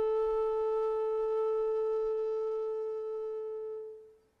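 Keyed wooden Irish flute holding one long, pure note in a slow air, fading gradually and stopping right at the end.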